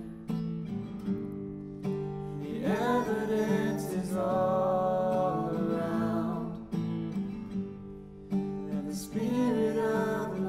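Acoustic guitar played with a man and a woman singing a praise song together.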